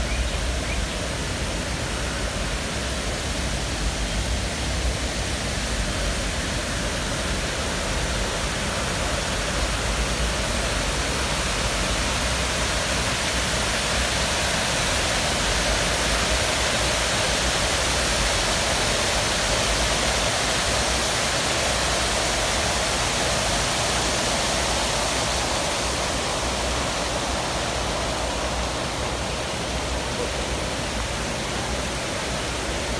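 Water cascading off the ledges of a tiered fountain into its pool, a steady rush that grows louder in the middle and eases toward the end.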